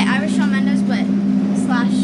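Steady low drone of a school bus engine heard from inside the bus, with children's voices chattering over it.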